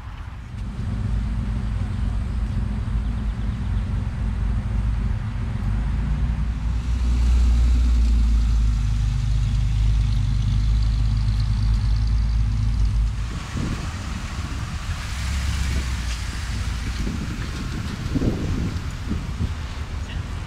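Pontiac Fiero engine running steadily close by, getting louder about seven seconds in and dropping off sharply about thirteen seconds in as the car moves away. After that, lighter road and wind noise with a few brief voices.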